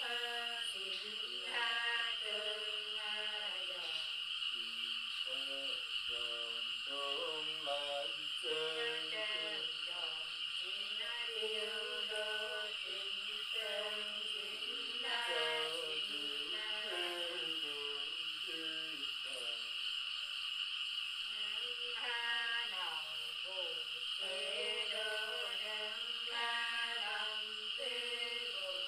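Women singing a Nùng folk song unaccompanied: slow, drawn-out phrases with sliding, ornamented notes, separated by short breaths.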